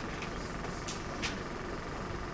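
Marker pen writing on a whiteboard: a couple of brief scratchy strokes about a second in, over a steady low room hum.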